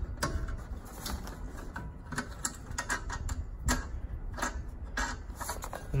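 Irregular light clicks and taps from loosening a propane tank's mounting bracket by hand.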